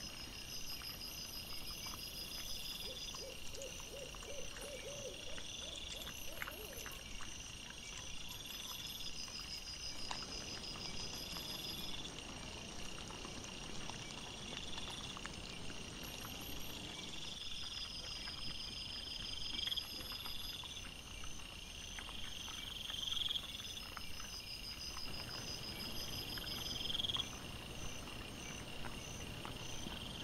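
Night-time woodland sound from a trail camera played back at four times speed: insects chirping in regular repeating phrases every couple of seconds. A short run of evenly spaced pitched calls comes a few seconds in, with scattered faint clicks throughout.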